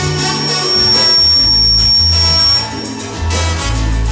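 Live salsa band playing, with bass and percussion. A thin, steady, high whistle-like tone is held over the music for about the first two and a half seconds, then stops.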